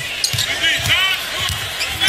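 Basketball dribbled on a hardwood court, with sneakers squeaking sharply a few times, over steady arena crowd noise.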